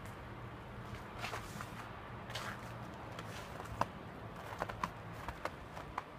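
Dog's paws crunching and scuffing in thin fresh snow as it moves and noses about, irregular crackly steps with a few sharper clicks in the second half.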